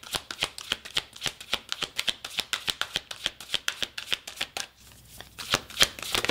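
A deck of cards being hand-shuffled: a quick run of card flicks and slaps, about five a second, with a short pause near the end followed by a few louder snaps.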